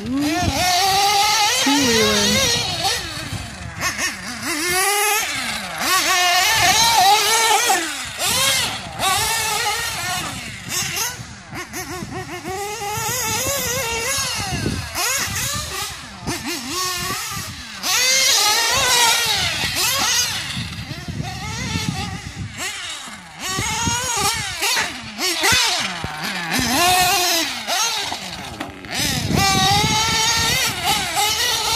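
Reds R5T nitro engine in a Losi 8ight-T 3.0 truggy revving up and easing off over and over as it is driven around the track, its high whine rising and falling every second or two. It is tuned a little rich but pulls smoothly.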